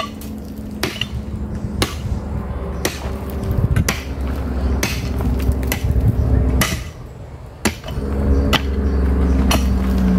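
Pickaxe striking hard, stony ground about once a second, each blow a sharp knock.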